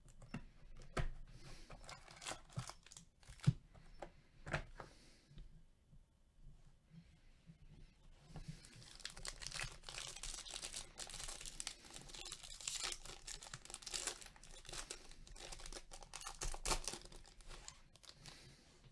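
Plastic wrap around a stack of trading cards being torn open and crinkled by gloved hands. Several light clicks and taps from handling the box and cards come first, then a long stretch of dense crinkling in the second half.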